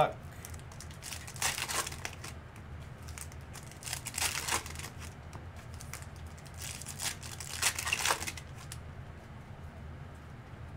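Foil trading-card pack wrappers being torn open and crinkled in three short bursts, over a steady low hum.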